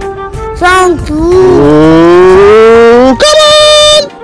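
Background music, broken by a loud, drawn-out cry that rises in pitch for about two seconds after a short first call, then a held high note near the end.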